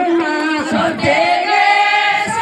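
A group of women singing together unaccompanied, with long held notes gliding from one pitch to the next.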